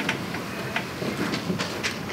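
Handling noise of a handheld microphone as it is passed to an audience member: a rustling hiss with a few irregular knocks.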